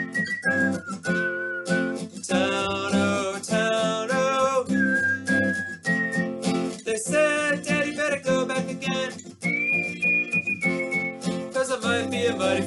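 Acoustic guitar strummed under a sung folk melody, with several high, single held notes in between.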